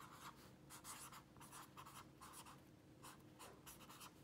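Felt-tip marker writing on lined notebook paper: a run of faint, short pen strokes one after another as a word is written out.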